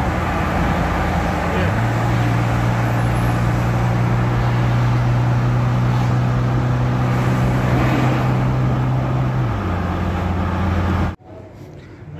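Car engine hum and tyre and road noise heard from inside the cabin at highway speed. The engine note steps up in pitch about two seconds in and drops back near the end, then the sound cuts off abruptly just before the end.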